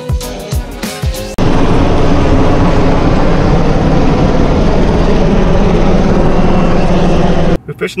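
Background music for about a second and a half, then a cut to the loud, steady noise of two helicopters flying over the water, rotors and engines running, which stops suddenly near the end.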